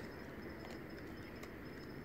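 Faint outdoor night background: a steady hiss with a thin, broken high-pitched trill and a few soft clicks.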